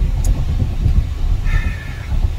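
Steady low road and tyre rumble inside the cabin of a moving Tesla electric car, with no engine note.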